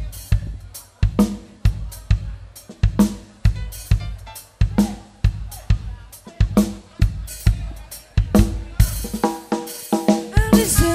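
Acoustic drum kit played live: a busy groove of bass drum, snare and cymbal hits, with a few pitched notes from the band coming in near the end.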